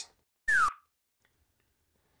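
A single short whistle-like tone, falling in pitch and lasting about a quarter second, about half a second in.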